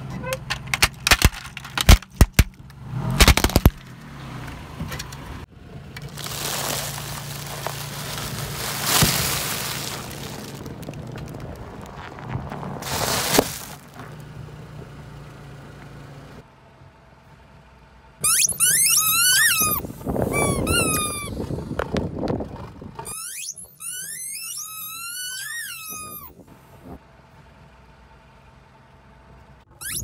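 Car tyre rolling over and crushing a plastic toy fire truck, a rapid string of sharp plastic cracks and snaps in the first few seconds. This is followed by a long crunching hiss as popcorn is crushed under the tyre. Later come runs of high, sliding squeaks.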